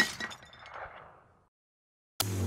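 Glass-shattering sound effect: the tail of a pane breaking, with shards tinkling and clinking as it dies away about a second in.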